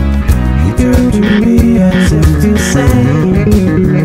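Six-string electric bass (Muckelroy HMC 6) played in a fast, busy run of quickly changing notes over a full band backing track.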